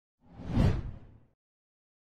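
A single whoosh transition sound effect that swells to a peak about half a second in, then fades out just over a second in, with a deep low end beneath the swish.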